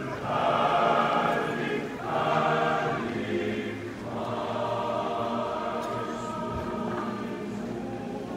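Large male-voice student choir singing a Swedish spring song unaccompanied: two loud, swelling phrases in the first three seconds, then a softer, longer held phrase from about four seconds in.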